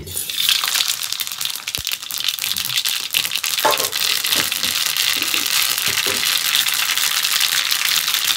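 Mustard seeds spluttering and sizzling in hot oil in a long-handled iron ladle for a tadka: a dense crackle of tiny pops that starts suddenly and keeps on steadily.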